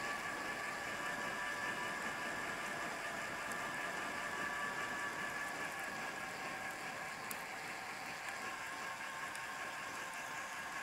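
Steady whirring riding noise of a Raleigh M80 mountain bike rolling along a paved trail, with a couple of steady high tones over it.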